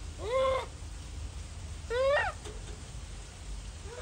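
Japanese macaque giving two short calls, each rising and then falling in pitch, about two seconds apart, the second call higher than the first.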